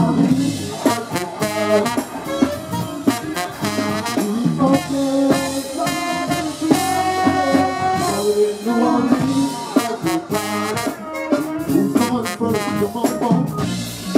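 Live funk band playing loudly, with sustained melodic lines over a drum beat.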